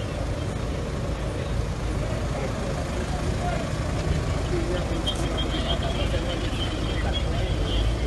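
Nissan Kicks SUV's engine running with a steady low rumble, under the murmur of voices nearby.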